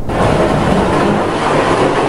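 Steady, loud ambient din of a busy traditional market, starting abruptly at the cut from the studio.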